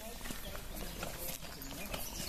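Footsteps crunching on a clay tennis court, irregular, with a faint voice in the background.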